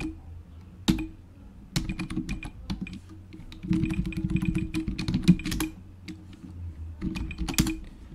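Typing on a computer keyboard: irregular runs of key clicks with short pauses between them, with single sharper key strikes about a second in and near the end as commands are typed and entered.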